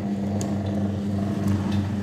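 Electric sugarcane juice machine's 1 HP motor driving its three heavy-duty rollers, running with a steady hum just after being switched on.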